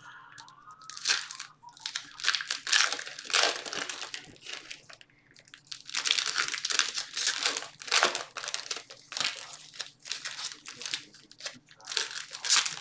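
Trading cards and foil pack wrappers being handled: cards flipped and shuffled through by hand, with wrapper crinkling, in irregular rustles. There is a brief lull about four to five seconds in.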